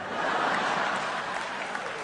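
Large audience applauding right after a punchline, breaking out at once and slowly dying away.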